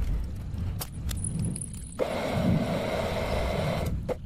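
Metal lathe with a low running rumble and a few light clicks. About halfway through, a steady cutting hiss with a thin whine begins abruptly as the tool cuts the steel workpiece, and it cuts off sharply at the end.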